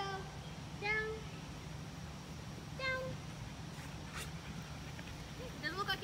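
Young flat-coated retriever whining in short, high calls: one each at about the start, a second in and three seconds in, then several in quick succession near the end.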